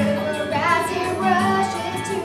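Show tune with a child's singing voice carrying the melody over backing music.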